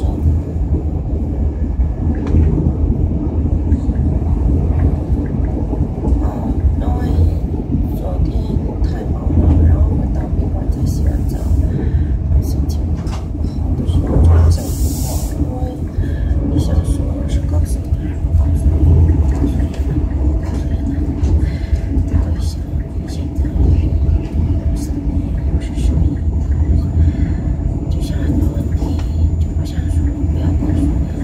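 Passenger train running, heard from inside the carriage: a steady low rumble with scattered clicks, a brief hiss about halfway through, and voices in the background.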